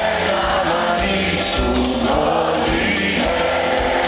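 A live band playing a song with voices singing, recorded from within the audience at a large open-air concert.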